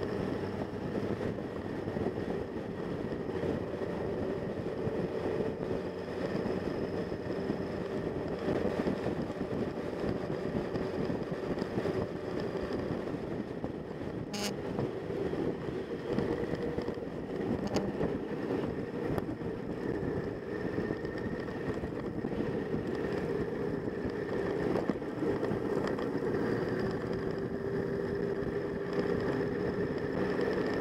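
Motorcycle engine running steadily at cruising speed while riding, with wind rushing over the microphone. A single sharp click about halfway through.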